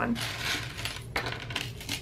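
Metal chain necklaces jingling and clinking as they are slid across a tabletop and set down, with a few sharp clinks among the rustle.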